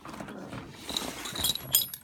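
Rubbing and handling noise against a leather western saddle, with light metallic clinks of buckles and rings in the second half, loudest just before the end.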